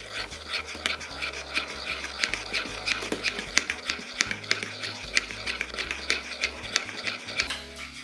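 A metal spoon stirring an oil-and-honey dressing in a small ceramic ramekin, scraping and clicking against the bowl several times a second, over soft background music.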